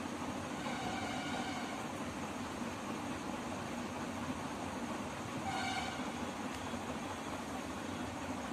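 Steady background noise with a faint distant horn sounding twice, briefly, about a second in and again near six seconds.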